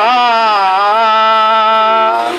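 A man singing one long held note, the pitch dipping slightly in the first second and then holding steady.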